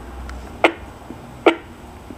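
Three sharp clicks, about one every 0.9 seconds, as a two-way radio is handled, with a faint low hum underneath.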